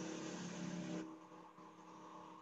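Faint steady hum with several held tones, louder for about the first second and then fading away.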